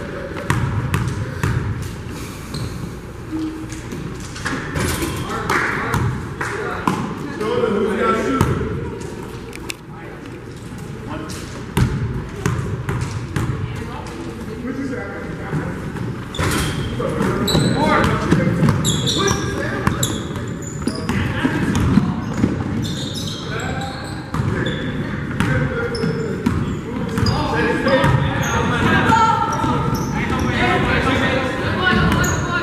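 Basketball game in a gym: a ball bouncing on the hardwood court and players' sneakers squeaking, with voices chattering in the background, all echoing in the large hall.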